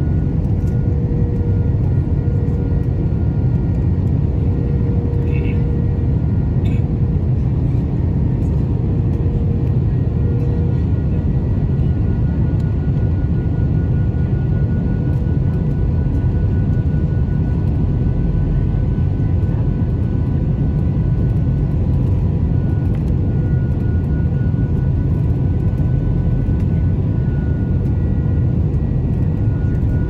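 Jet airliner cabin noise at a window seat during the descent to land: a steady, deep roar of engines and airflow, with a few faint steady tones above it.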